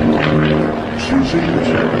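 Piston engine and propeller of a small aerobatic biplane running in flight, its note shifting up and down as the aircraft tumbles.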